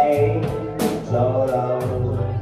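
Live band playing a song on keyboard, electric bass guitar and drum kit. The bass line runs steadily under sharp drum and cymbal hits about every half second.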